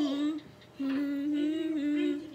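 A girl humming a tune in long, nearly level notes, with a short break about half a second in.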